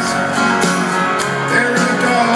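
Live rock band playing an instrumental passage between sung lines, heard from the arena crowd: acoustic guitar strumming over electric guitars, with regular drum and cymbal strokes.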